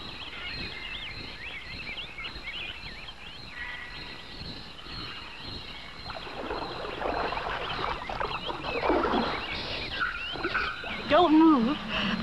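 Birds chirping and squawking, many short, quick calls, growing louder and busier about halfway through; a man's voice starts near the end.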